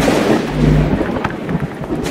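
Cinematic logo sound effect: a deep, thunder-like rumble with low held notes and scattered crackles, dying away.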